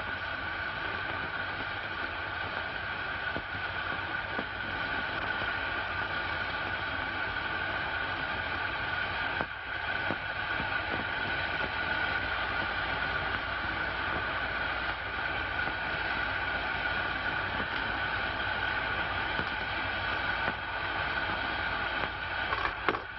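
A glassblower's bench torch burning, a steady noise with a few held tones, briefly dipping about nine seconds in, as glass is worked and blown in its flame.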